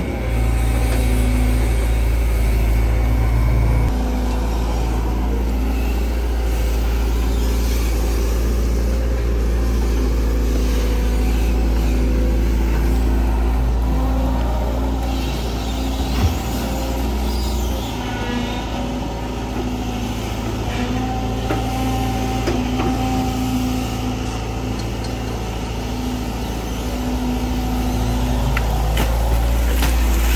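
Sumitomo SH long-reach excavator's diesel engine running under load as the boom and bucket dig, with a steady low drone whose pitch shifts as the work changes. There is a single knock about halfway through.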